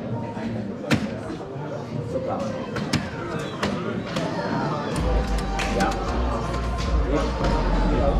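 Sharp clacks of soft-tip darts hitting electronic dartboards, several scattered through the moment, over the machines' electronic sound effects and background voices. A low hum comes in about five seconds in.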